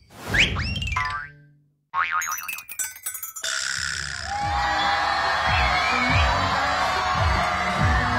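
A cartoon 'boing' sound effect, a sweeping glide in pitch, opens a title jingle, followed after a short gap by a quick run of clicks. From about three and a half seconds in, music with regular low bass thumps plays under the noise of a crowd.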